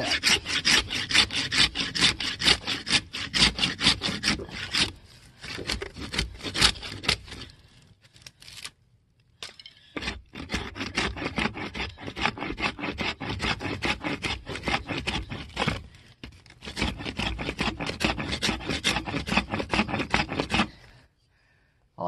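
A bushcraft knife blade scraping shavings off a dry wooden stick in fast, even strokes, with a pause about eight seconds in before the strokes resume and stop shortly before the end.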